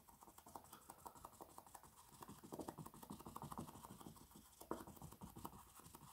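Foam sponge dabbing and rubbing acrylic paint onto a stretched canvas: a faint, quick, irregular run of soft taps and scratches.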